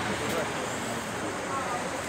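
Steady background noise of street traffic passing, with faint voices underneath.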